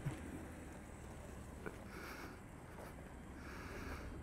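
Faint low rumble of a BMW X7 M60i crawling at walking pace through mud and over a log, with a single small click about halfway through.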